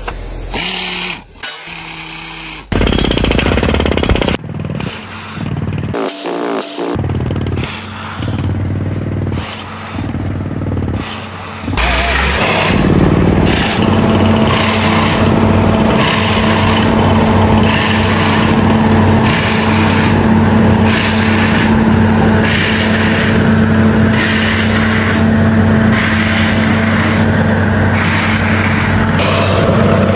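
Engine driving a small borewell drilling rig, running steadily through the second half. The first part is a series of short, abruptly changing stretches of machine noise.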